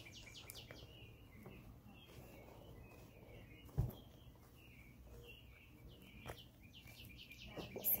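Faint birds chirping in the background, short calls repeating, with a single thump about four seconds in.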